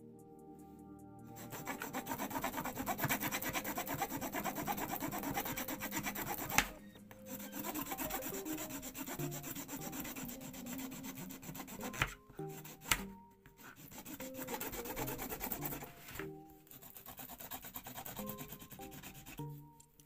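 Wooden burnishing stick rubbed quickly back and forth over lure foil laid on a diamond-textured metal plate, pressing the scale pattern into the foil. It is a dry, scratchy rubbing in several runs, broken by short pauses, with a few sharp taps of the tool.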